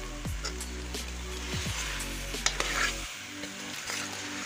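Potato and egg mixture sizzling in a pot while a metal spoon stirs and scrapes through it, with a sharp clink of the spoon against the pot about two and a half seconds in.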